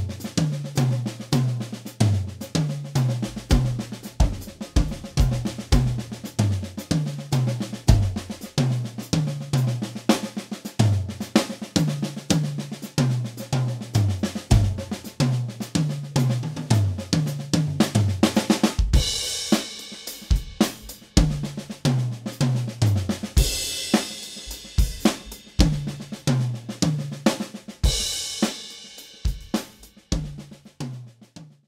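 Acoustic drum kit playing fast paradiddle fills with moving accents spread around the toms, each run stepping down in pitch toward the floor tom, with bass drum under it. Cymbal crashes come in about two-thirds of the way through and twice more near the end.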